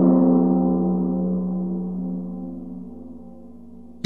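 A large bell struck once, sounding a deep ringing tone that fades slowly.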